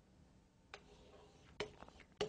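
Near silence, with a faint single click about three-quarters of a second in and a few quick faint clicks near the end.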